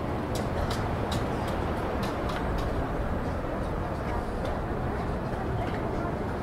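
Outdoor ambience of indistinct voices over a steady low rumble, with a quick run of sharp clicks, about three a second, in the first half.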